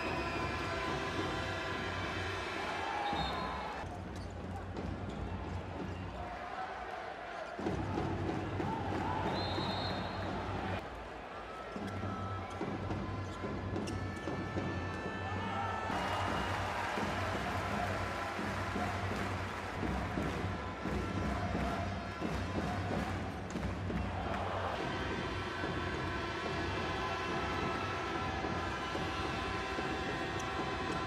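Handball ball bouncing on the indoor court floor during play, over steady arena crowd noise.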